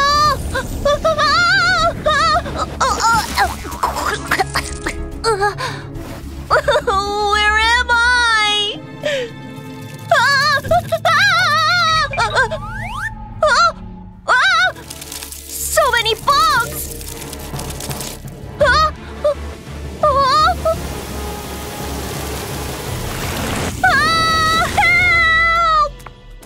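Cartoon character's drawn-out, wavering cries and yells over background music, with gushing water.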